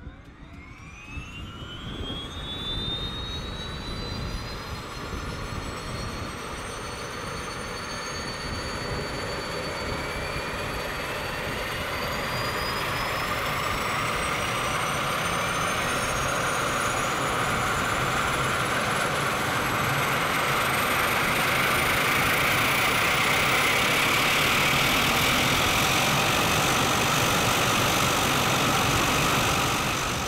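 Single-engine turboprop engine of a turbine-converted Lancair Legacy being started: a high turbine whine rises in pitch as the engine spools up and the propeller starts turning. It grows steadily louder and keeps climbing in pitch, levelling off near the end.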